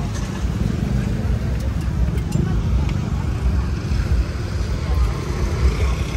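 Busy street ambience: background crowd chatter and passing cars and motorbikes over a heavy, steady low rumble.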